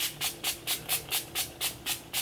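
Pump-mist bottle of NYX matte finish setting spray being spritzed in quick succession, about four short hissing sprays a second.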